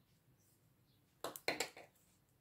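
A short cluster of sharp clicks a little over a second in, from metal knitting needles knocking together as the work is shifted from one needle to the next. The rest is quiet.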